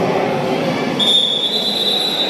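Referee's whistle: one long, steady high blast starting about halfway through, over the general noise of a sports hall.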